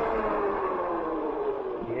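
EUY K6 Pro fat-tire e-bike braking hard from about 30 to 20 mph: a steady whine from the rolling bike that falls slowly in pitch as it slows, in a controlled stop.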